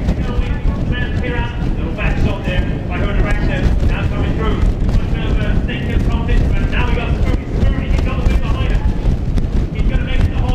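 Continuous talking, a commentator's voice calling the play, over a steady low rumble.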